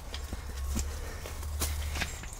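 Footsteps on dry leaf litter and twigs, a few separate sharp steps, with leaves and branches brushing past while pushing through dense undergrowth. A steady low rumble on the microphone sits under them.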